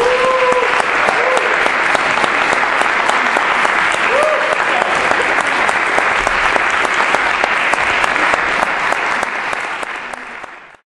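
Audience applauding steadily, with a few short voices calling out in the first second or so and again about four seconds in; the applause starts to thin out near the end.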